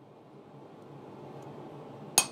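A faint steady low hum with no strikes, in a pause between hammer blows on a punch.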